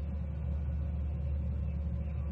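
Steady low rumbling hum with a faint even hiss above it, unchanging throughout.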